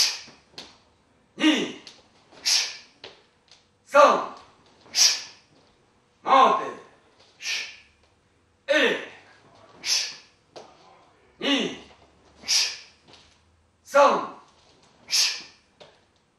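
A karate practitioner's forceful breathing with each technique: a short voiced shout-like exhalation falling in pitch, then about a second later a sharp hissing breath, repeated in pairs about every two and a half seconds, six pairs in all.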